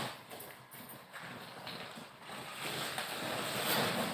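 Plastic sack rustling and crinkling as it is handled, growing louder over the last couple of seconds.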